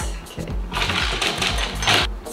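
Background music with a steady beat. From about a second in, glass bottles clink and rattle against each other in a glass bowl as one is lifted out, with a sharper clink near the end.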